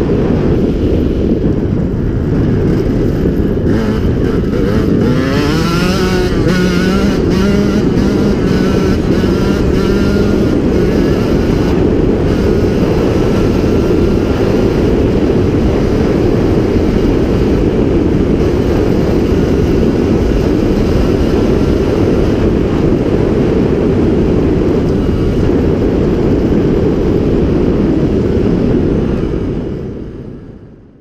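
2009 KTM 125 EXC Six Days two-stroke single-cylinder engine with an aftermarket KTM Racing exhaust, running under way on a dirt track. The revs climb about five seconds in and then hold steady, mixed with heavy rumbling noise from riding, and the sound fades out at the very end.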